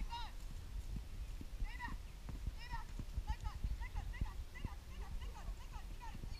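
Horse's hooves thudding on grass turf at a canter, a run of dull irregular beats, with faint voices over them.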